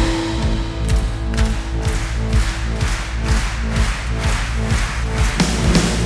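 Live rock band with symphony orchestra playing an instrumental passage: a steady beat of about two hits a second over sustained low bass notes, the sound filling out near the end.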